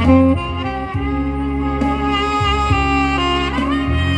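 Saxophone playing a slow, sustained melody over a recorded accompaniment with a bass line; near the end a long note wavers with vibrato.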